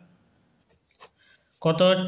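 Pen writing on paper: a few faint, short scratches of pen strokes, then a man's voice comes in near the end.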